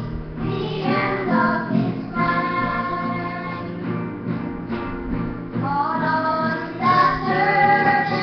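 A song sung over instrumental accompaniment, with long, held sung notes.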